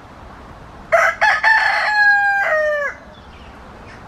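A rooster crowing once, about two seconds long: two short opening notes, then a long held note that drops in pitch at the end.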